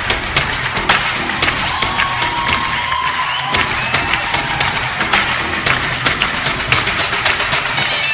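Music playing over a cheering crowd, with many short, sharp clicks running through it.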